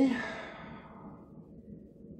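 A man's breathy, voiced sigh trailing off at the end of a spoken word, fading out over about a second and a half, then quiet room tone.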